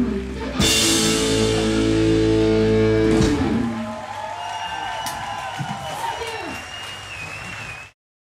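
A rock band on stage, with drum kit and guitars, hits a final chord with a cymbal crash about half a second in and holds it for nearly three seconds before it stops. Quieter voices with wavering, gliding tones follow, and the sound cuts off suddenly at the end.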